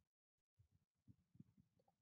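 Near silence, with very faint typing on a computer keyboard: a few soft clicks and low thumps.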